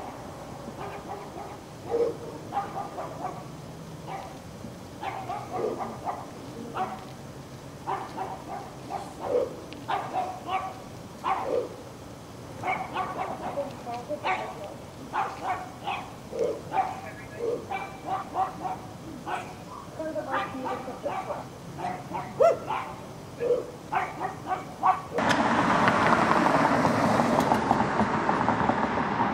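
A dog barking repeatedly in short, uneven runs of barks. About three seconds before the end, the sound changes abruptly to a louder, steady rushing noise.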